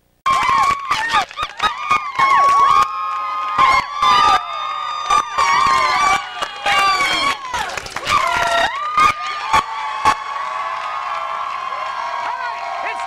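Studio crowd cheering, whooping and shouting, cutting in suddenly out of silence just after the start.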